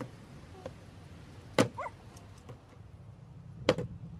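Two sharp knocks about two seconds apart: a flipped plastic bottle landing on a folding table.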